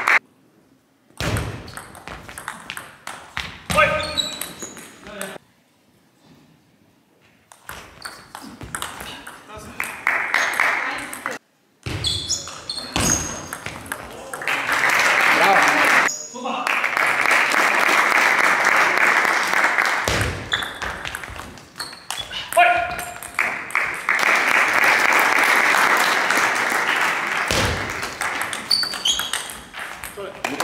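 Table tennis rallies: the celluloid-plastic ball clicks sharply off rubber-faced rackets and bounces on the table in quick strings of taps with short pauses between points. Over the second half a loud, steady crowd noise runs under the ball strikes.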